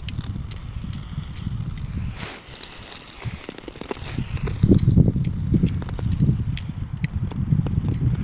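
Hockey skate blades gliding over pond ice while being towed: a rough low rumble with scattered sharp clicks, dipping for a second or so and then growing louder about halfway through.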